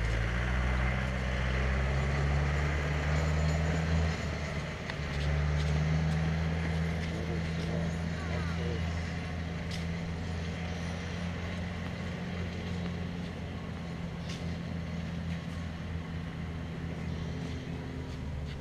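A motor vehicle engine running steadily, a low droning hum that dips briefly about four seconds in and eases off somewhat in the second half. A couple of faint sharp knocks come through over it.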